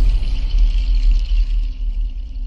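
Channel ident's sound design: a loud, deep cinematic rumble with a faint high shimmer above it that fades near the end.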